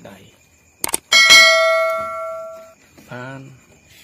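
Two quick clicks, then a bell ding that rings out for about a second and a half and fades: the stock sound effect of an animated subscribe-button overlay being clicked, with its notification bell.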